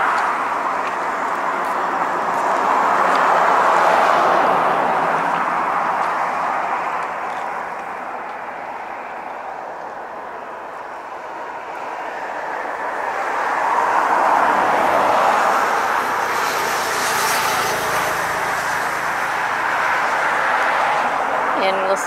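Passing road traffic: a steady rush of tyre and engine noise that swells about four seconds in, fades, and swells again about fourteen seconds in.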